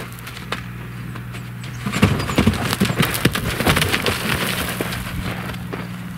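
A horse's hooves stepping and scuffing, a quick run of knocks and scrapes starting about two seconds in and lasting a couple of seconds before easing off.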